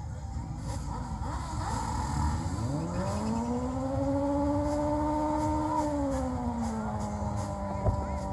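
A parade vehicle's engine revving: its pitch climbs over about a second, holds for about two seconds, then drops back and settles to a steady lower hum. A sharp knock comes near the end.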